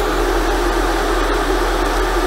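A steady, loud hiss of rushing air with a low hum beneath it, from the airbrush spraying setup in use while a model locomotive tender is weathered.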